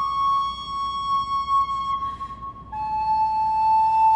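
Solo wooden recorder holding a long note that sinks slightly and fades away about two seconds in. After a brief pause a new, lower note begins and is held steadily.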